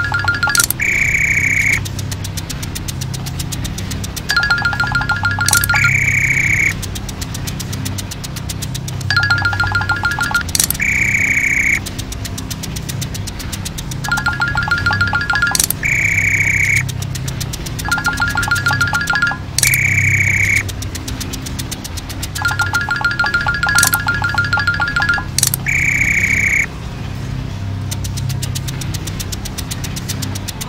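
Cartoon machine sound effects from an animated car factory, repeating about every five seconds: a pair of high electronic tones, a sharp click, then about a second of a higher held beep. A steady low hum runs underneath.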